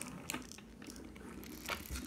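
Faint scattered clicks and rustling from handling, a few small knocks over a low background.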